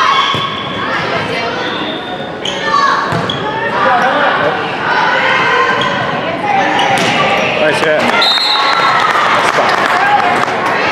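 Youth volleyball rally in a gym: sharp slaps of the ball off forearms and hands, under girls' shouts and calls echoing in the hall. The shouting grows denser near the end as the point is won.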